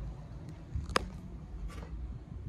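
Handling and movement noise from a handheld camera carried through a room: a low rumble with faint knocks, and one sharp click about a second in.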